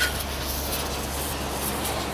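Dekton DK-CWR2300FB 2300 W electric pressure washer running, its strong jet of water spraying onto a motorcycle with a steady hiss over a low hum.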